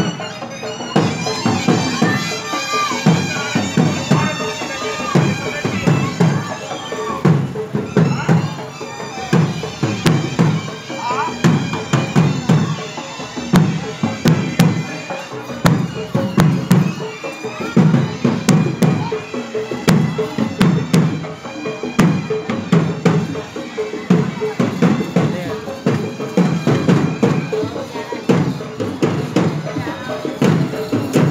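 A procession band playing a tune on a wind instrument over a slow, steady drumbeat, with crowd voices mixed in.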